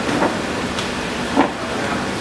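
Steady background noise of a busy food court, with a faint low hum and two brief faint sounds about a quarter second in and near a second and a half in.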